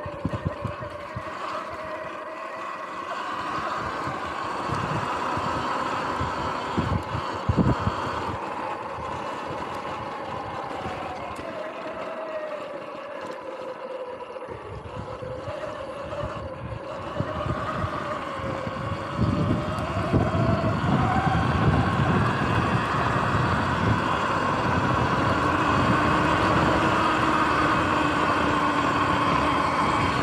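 Sur-Ron X electric dirt bike riding over grass: the motor's whine rises and falls in pitch with speed over the rumble of the tyres and suspension. There are a couple of knocks from bumps in the first eight seconds, and the rumble grows louder about two-thirds of the way in.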